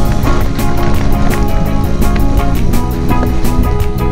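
Background music with a fast, steady drum beat under sustained chords.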